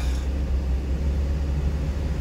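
Steady low rumble of a delivery truck, heard from inside its cab.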